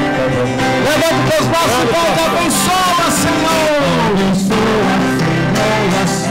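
Catholic procession hymn: a voice singing a wavering melody over steady guitar accompaniment, loud and continuous.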